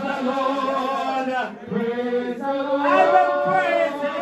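A congregation singing unaccompanied in long, held, chant-like notes, with a brief break about one and a half seconds in.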